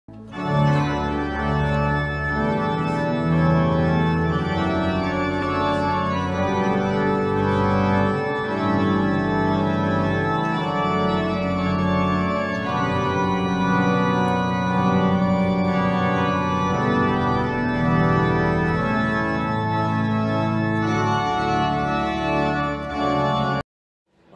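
Organ music playing slow, sustained chords over a held bass line. The chords change every second or two, and the music cuts off abruptly just before the end.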